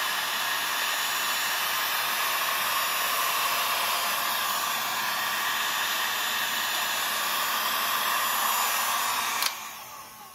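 Electric heat gun blowing steadily, held on old painted wooden trim to heat the paint until it bubbles; it cuts off near the end.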